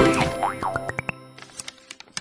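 Short intro jingle for an animated logo: quick pitch glides up and down, then a fast run of short plucked notes climbing in pitch, fading out with a few light clicks.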